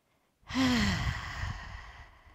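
A woman's long, breathy exhaled sigh, coming from the effort of holding a lifted locust-pose backbend. It starts about half a second in with a brief falling voiced note and trails off into breath.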